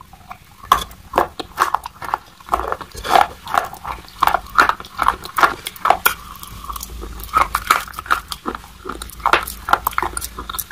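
Close-miked biting and chewing of hard white chalk-like sticks: a quick, uneven run of sharp crisp cracks, several a second.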